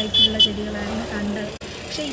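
Two short, high-pitched beeps of a vehicle horn in street traffic, right at the start, over the low rumble of traffic.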